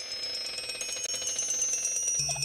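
Intro music sting: several high tones pulsing rapidly, growing louder.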